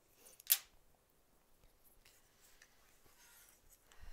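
Small embroidery scissors snipping thread once: a single short, sharp click about half a second in, followed by faint handling of the fabric and thread.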